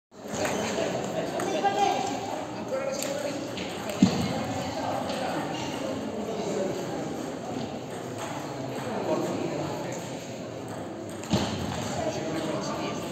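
Indistinct voices chattering around a table tennis hall, with the sharp clicks of a table tennis ball being struck and bouncing. The loudest click comes about four seconds in, and another comes shortly before the end.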